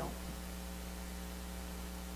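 Steady low electrical mains hum in the sound system, with faint hiss.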